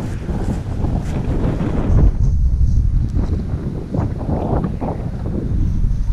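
Strong wind buffeting the microphone: a loud, gusting low rumble that swells about two seconds in.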